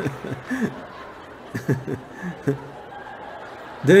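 Audience chuckling and laughing quietly in short, scattered bursts, reacting to a joke and dying away after about two and a half seconds.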